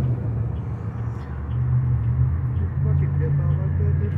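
Transit bus engine idling at the curb, a steady low hum.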